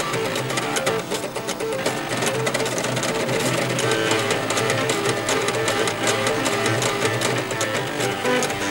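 Floppy disk drives' head stepper motors stepped at audio rates, playing a tune in pitched notes, with a low line beneath a higher melody.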